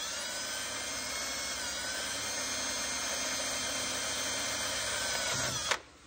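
Cordless drill running slowly and steadily, its bit cutting into the soft metal case of a Hydro-Gear EZT 2200 transmission. It stops shortly before the end as the bit breaks through into the oil.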